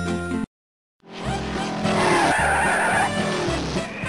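A glockenspiel-like mallet jingle stops, half a second of silence follows, and then a rushing noise with several falling tones fades in and carries on steadily.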